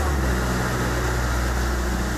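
Refrigeration machinery in a cold-storage warehouse running with a steady, even low hum.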